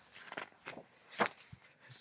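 Paper and card memorabilia being handled: a few short rustles and taps, the sharpest about a second in.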